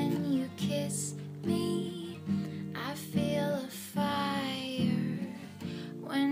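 Acoustic guitar strummed, with a woman singing a drawn-out melody line over it, recorded on a phone's voice-memo app.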